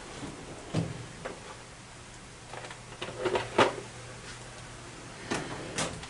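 A handful of separate knocks and clunks, as from tools or metal parts being handled at a metal lathe, over a faint steady low hum. The knocks cluster about three seconds in and come twice more near the end.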